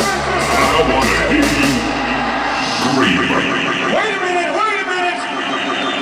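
Hardstyle dance music playing loud through a club sound system. The kick-drum beat fades within the first second or so and the heavy bass cuts out about three seconds in, leaving a breakdown of rising and falling pitched lines without bass.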